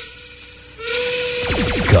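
FM radio station jingle or sound effect, off-air: a steady tone over hiss drops away for most of a second, comes back, and then a quick run of falling pitch sweeps starts near the end.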